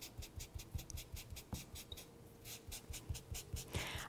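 Cotton pad loaded with soft pastel chalk scrubbed hard back and forth across sketchbook paper, pressing the pigment into the paper's fibre. The rapid strokes come about five a second, with a short pause about halfway through before the scrubbing resumes.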